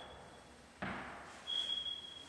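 A thud about a second in, with a faint, thin, high steady tone before it and again near the end.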